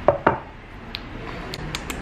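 Lips smacking while tasting coffee: two sharp wet clicks at the start, then a few fainter clicks.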